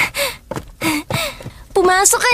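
A woman's short, startled gasps and exclamations, several in quick succession, then a drawn-out vocal cry that starts near the end.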